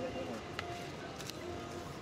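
Quiet background with faint distant voices and a few light clicks, as a cloth tape measure is handled around a tree's root base.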